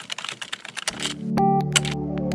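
Rapid computer-keyboard typing clicks, a sound effect for text being typed, which stop about a second in as a synthesizer chord swells up. A simple melody comes in over it near the end.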